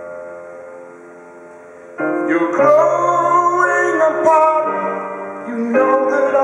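Live rock band with piano: a held chord fades down, then about two seconds in the band comes back in louder and a singing voice enters over it.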